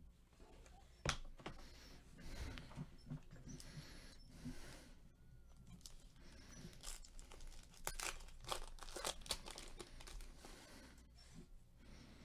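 Foil trading-card packs being handled, torn open and crinkled, then the cards slid out in gloved hands. There are faint scattered crackles, densest from about seven to ten seconds in.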